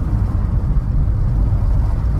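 A car being driven, heard from inside the cabin: a steady low rumble of engine and road noise.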